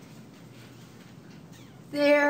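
Faint, steady room noise, then right at the end a loud, high-pitched voice starts up.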